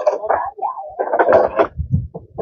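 Indistinct people's voices, talking or calling out.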